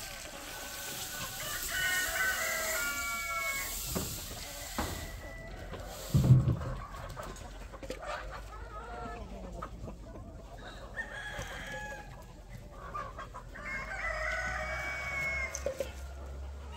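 Chickens clucking, with a rooster crowing about two seconds in and again near the end. A dull thump about six seconds in is the loudest sound.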